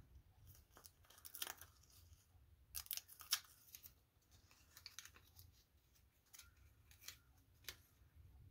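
Faint paper handling: a small strip of paper postage stamps crackling and rustling between the fingers. There are a few short crisp sounds, the loudest about three seconds in, and one more near the end as the strip is laid onto the collaged cardboard cover.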